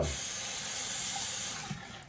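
Bathroom sink tap running, a steady rush of water that eases off near the end, as a safety razor is rinsed under it between strokes.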